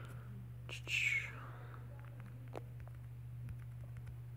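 A person's short breathy, whisper-like sound about a second in, over a faint low steady hum, with a few faint clicks.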